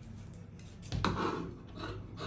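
Fabric scissors cutting into folded fabric on a table: a few short snips from about halfway through, after quiet handling at first.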